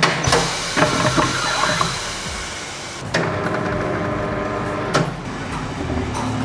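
Tyre changer machine working on a car wheel. A hiss lasts about three seconds, then the machine's motor starts suddenly and runs steadily, with a click near the end.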